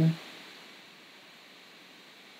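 A man's voice finishing a word, then faint, steady hiss of room tone on a voice recording.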